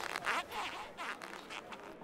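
Long rubber modelling balloons being twisted, squeaking and rubbing in a quick run of short, repeated strokes.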